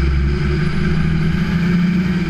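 An engine running steadily at a constant speed, with a deep, even drone.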